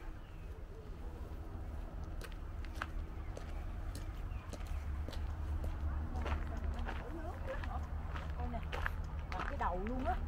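Indistinct voices of people talking nearby, joining in about halfway through, over a steady low rumble with scattered sharp clicks.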